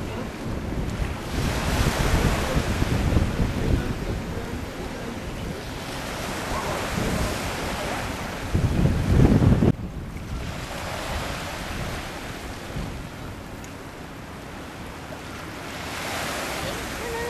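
Wind buffeting the microphone over small sea waves washing against the shore, rising and falling in gusts, with one strong gust about nine seconds in that stops abruptly.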